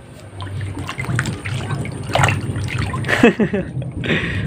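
An otter swimming and thrashing in a shallow plastic tub of water, chasing live fish: irregular splashing and sloshing.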